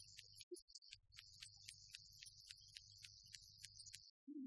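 Near silence: a faint, broken low hum and a high-pitched hiss that cut in and out, with no clear speech.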